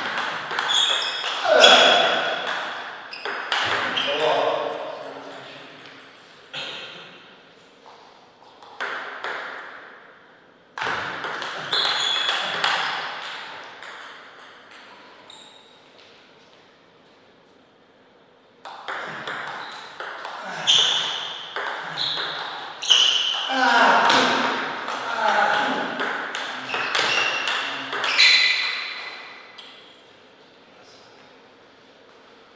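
Table tennis rallies: the plastic ball clicking rapidly back and forth off paddles and table. There are three rallies, with quieter pauses between points.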